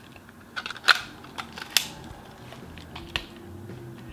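An extension tube and lens being fitted onto the bayonet mount of a Canon EOS 7D camera body: light handling scrapes and about three sharp clicks as the mount seats and latches.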